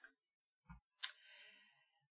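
A soft low thump and then, about a second in, a single sharp click followed by a faint brief hiss, in an otherwise near-silent room.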